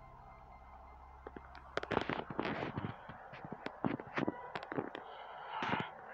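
Strips of adhesive edge tape being pulled apart and handled: a dense run of irregular crackles and sharp clicks that starts a little under two seconds in.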